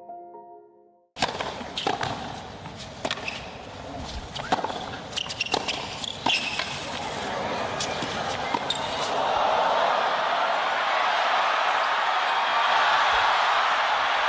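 A professional tennis rally in a packed stadium: sharp racket strikes and ball bounces come at irregular intervals over crowd murmur. From about eight seconds in, the crowd noise swells steadily and stays loud as the rally goes on. Music fades out in the first second, before a short gap.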